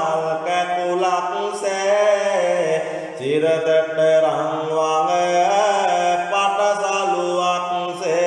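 A single male voice chanting Sinhala kolmura verses to the deity Gambara in a slow, drawn-out melody, with long held notes and a short break about three seconds in.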